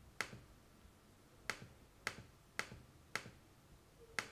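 Five sharp clicks of a computer mouse button, about half a second apart, each press followed by a softer release click, as menu items are deleted one by one.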